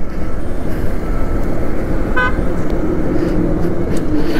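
Motorcycle engine, wind and road noise while riding in traffic and slowing down, with one short vehicle horn toot about two seconds in.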